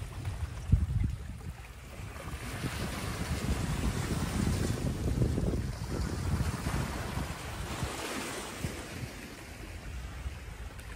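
Small sea waves breaking and washing over a shore of coral rubble, with wind rumbling on the microphone. The wash swells louder from about two seconds in until about six seconds, and again near eight seconds; a short thump comes about a second in.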